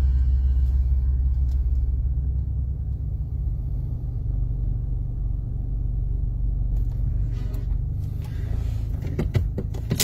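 Steady low rumble of a car heard from inside the cabin, with a few light clicks near the end.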